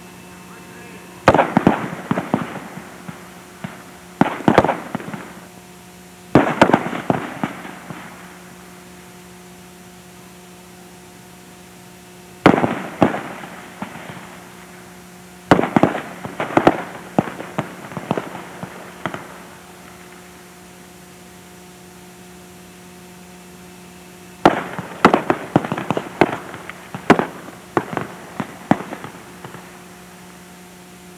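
Rifle fire from several M16 rifles on a firing range: clusters of sharp shots, some closely spaced and overlapping, come in about six bursts separated by quiet pauses of a few seconds. A steady electrical hum runs underneath.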